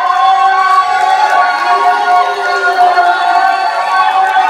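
A crowd of people cheering and calling out together in long, held, overlapping voices.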